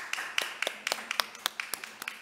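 Applause from a small audience: a few people clapping, with quick, irregular claps.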